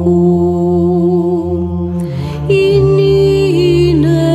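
Orthodox church chant: a melody with small wavering ornaments sung over a steady low held drone (ison). About two and a half seconds in, the melody line grows fuller and brighter.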